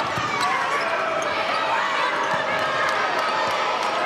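Basketball being dribbled on a hardwood court, short bounces over the steady murmur of an arena crowd.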